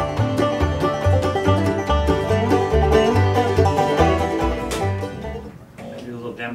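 Bluegrass music with banjo over a rhythmic plucked bass line, fading out about five seconds in.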